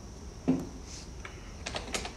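Laptop keyboard keys being pressed: a few quick clicks in the second half. About half a second in there is a short, low, louder sound.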